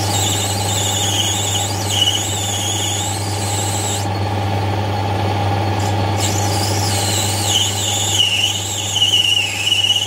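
Metal lathe turning brass bar stock. The lathe motor gives a steady hum under a high, wavering squeal from the cutting tool on the brass. The squeal breaks off for about two seconds in the middle, then comes back.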